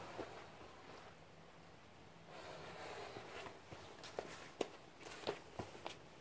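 Faint handling sounds: a soft rustle, then a few light clicks and taps spread over the last two seconds.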